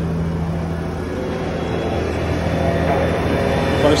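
Concrete mixer truck's diesel engine running with the drum turning, a steady low hum that grows somewhat louder over the second half.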